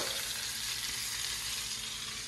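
Floured cod fillets frying in olive oil and butter in a stainless steel pan: a steady sizzle.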